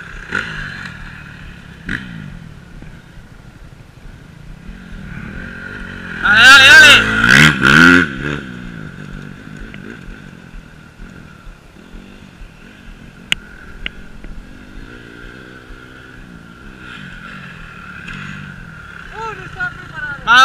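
Dirt bike engine idling steadily close by, while another motocross bike's engine runs and revs out on the track. A much louder burst of rising and falling pitch comes about six seconds in and lasts about two seconds.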